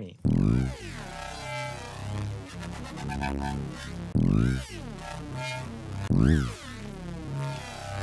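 Kilohearts Phase Plant FM synth bass patch playing with its distortion bypassed: the raw, undistorted input. A heavy sustained low bass under sweeping, gliding upper tones, with a detuned unison shimmer that sounds like a flanger; new notes hit near the start, about four seconds in and about six seconds in.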